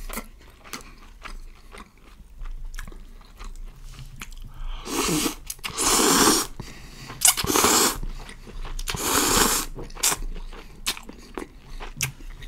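Close-miked eating of instant noodle soup: chewing with small wet clicks, then four loud slurps of noodles and broth about five to ten seconds in, then more chewing.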